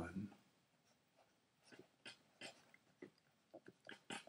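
Near silence with a few faint, irregular ticks from a stylus tapping on a tablet as a number is handwritten.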